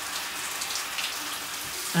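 Shower running: a steady hiss of falling water.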